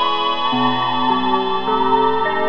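Ambient music: overlapping held tones, with a new note coming in about every half second in a slow, steady sequence.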